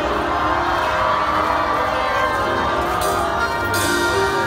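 Live band playing the instrumental passage of a Cantopop ballad over a concert PA, heard from within an outdoor crowd, with crowd voices and brief cheers about three seconds in and near the end.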